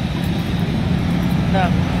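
Busy road traffic passing close by: a steady low rumble of engines and tyres, with a short spoken word near the end.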